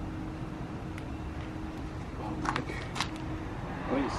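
Outdoor background: a steady low rumble with a faint steady hum, and a few light clicks about two and a half to three seconds in.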